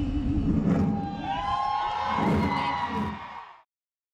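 Rally crowd cheering and whooping, with scattered shouting voices, fading out to silence about three and a half seconds in.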